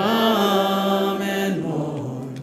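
Worship singers singing a slow, sustained line: one long note held for about a second and a half, then a lower note.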